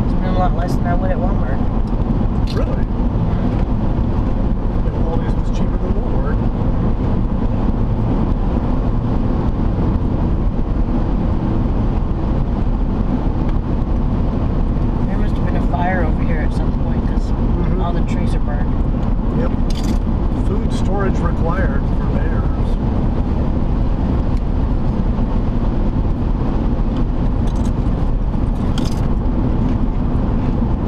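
Steady road and engine rumble inside a car cruising along a highway, with faint speech now and then.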